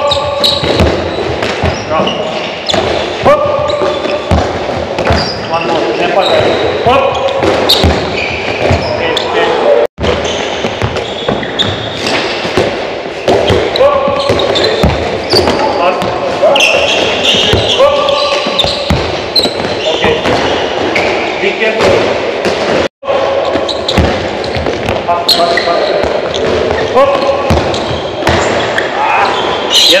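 A handball repeatedly thrown, bounced off a wooden sports-hall floor and caught or blocked by a goalkeeper, making a string of short thuds and slaps over ongoing voices.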